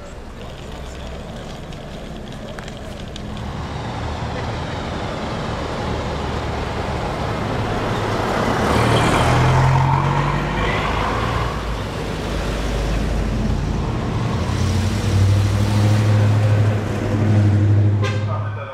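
Slow-moving road vehicles passing close by: engine hum and tyre noise swell to their loudest about halfway through, then a second vehicle's low, steady engine hum grows strong near the end.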